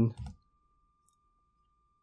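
A single faint computer mouse click about a second in, as the image is zoomed in Photoshop, over near silence with a faint steady high-pitched tone.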